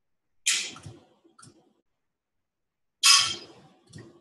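Two short hissing bursts of noise close to the microphone, about two and a half seconds apart, each dying away within about half a second.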